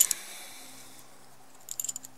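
Tent pegs being handled while a guy line is threaded through one: a faint rustle, then a quick run of small clicks near the end.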